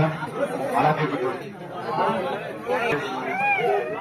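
Several people talking at once, starting abruptly.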